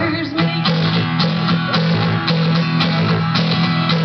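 Acoustic guitar strummed in a steady, even rhythm, played live.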